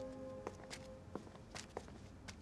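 Faint footsteps on a hard floor, several irregular steps, over soft background music whose held notes fade out within the first second.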